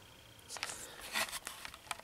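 Faint handling noise from a camera being moved: a scatter of light clicks and soft scrapes in a quiet small room.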